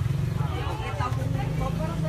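Several people talking in the background over a low steady hum.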